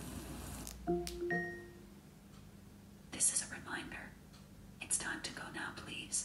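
Smart speaker's short two-note electronic chime about a second in, followed by soft rustling twice.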